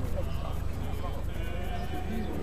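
Voices of a walking procession singing a hymn, with wavering held notes. Under them is a steady low rumble.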